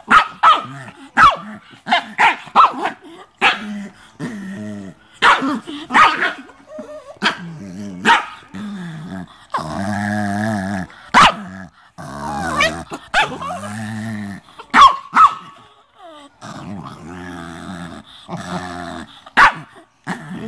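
Two small dogs play-fighting, growling in longer stretches with short sharp barks and yips breaking in about every second.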